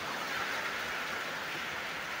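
Steady, even hiss of background noise, brighter in the upper range.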